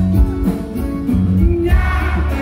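A live rock band playing over a concert PA, with a heavy bass, keyboard and drums under a man singing.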